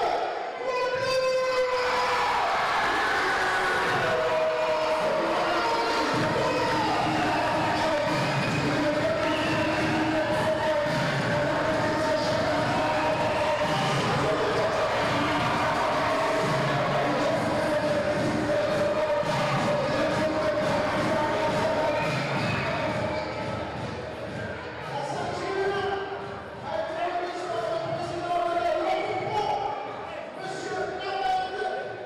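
Crowd in a hall cheering and shouting, loud and sustained, easing off after about twenty seconds.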